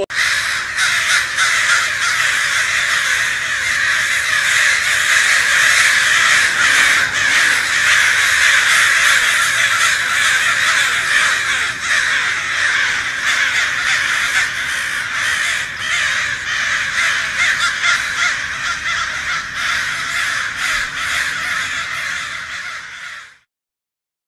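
A large flock of dark birds perched in roof rafters, many calling at once in a loud, unbroken chorus of harsh calls that cuts off suddenly near the end.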